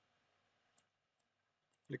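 Near silence broken by a few faint, short computer mouse clicks as an image is dragged and resized, the last one a right-click that opens a context menu.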